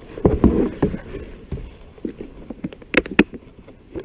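Knocks and thumps of gear and feet against a plastic fishing kayak's hull as the angler shifts around in it: a cluster of bumps in the first second, scattered smaller knocks, then two sharp clicks a little after three seconds in.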